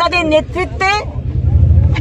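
A few spoken words in the first second, then a low rumble that swells over the second half.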